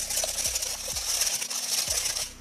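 Wire balloon whisk beating a runny egg, yogurt and oil mixture in a glass bowl: a steady, rapid whisking with faint strokes about twice a second.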